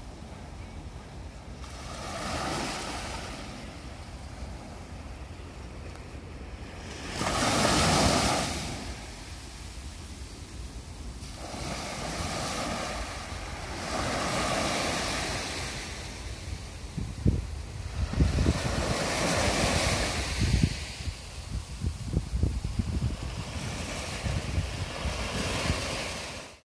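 Small shore-break waves on a flat sea, breaking and washing up the sand in surges every few seconds, the loudest about eight seconds in. In the second half, wind buffets the microphone with low rumbling gusts.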